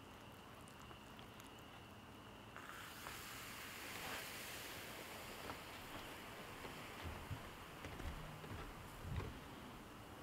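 Sugar and sulfuric acid reacting in a glass beaker: a faint steady hiss starts a couple of seconds in, as the black carbon column foams up and gives off steam. A few faint pops come near the end.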